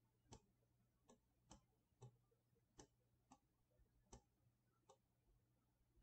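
Faint computer mouse button clicks, about eight at irregular intervals, as the button is pressed and released for smudge strokes, over a faint steady low hum.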